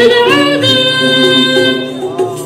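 Ensemble of ouds and violins playing Arabic music: the melody slides up into one long held note over a soft, regular low beat.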